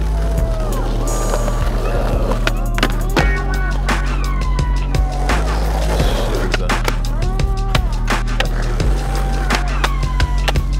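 Hip-hop beat with deep bass notes and gliding synth lines, without vocals. Over it are skateboard sounds: wheels rolling on concrete, and sharp clacks and scrapes as the board pops and grinds on a concrete ledge.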